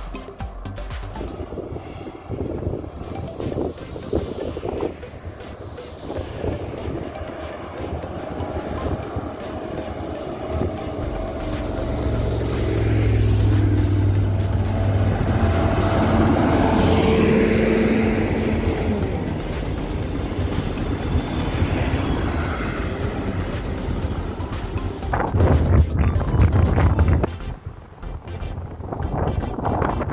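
Road traffic passing: a car, then a bus and a motorcycle coming up the road, their engines loudest from about twelve to eighteen seconds in.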